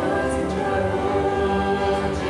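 Choir singing slow, sustained chords.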